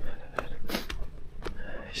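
A dog barking in the distance, its sound echoing.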